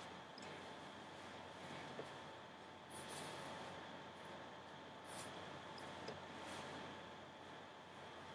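Faint rustling of hands handling and adjusting a synthetic wig on the head, a few soft brushes over a quiet room with a faint steady hum.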